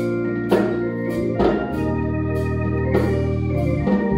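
Organ music: sustained chords that change every second or so, with sharp strokes roughly once a second.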